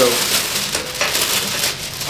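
A sheet of treatment-table paper being crinkled and crumpled by hand, a dense run of crinkling.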